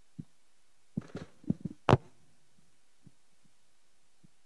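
Microphone handling noise: a string of short low thumps and knocks as a microphone is picked up and passed along, clustered in the first two seconds with the loudest near the two-second mark, then two faint knocks.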